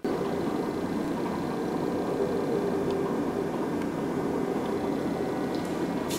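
Steady hum and hiss of background noise, like a fan or air-handling unit running, that starts suddenly at a cut and holds level throughout.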